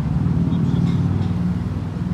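A motor vehicle's engine running close by: a steady low hum that swells slightly in the middle.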